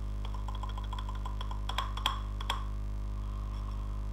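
Computer keyboard typing: a quick run of keystrokes, then a few harder key presses about two seconds in. A steady electrical hum runs underneath.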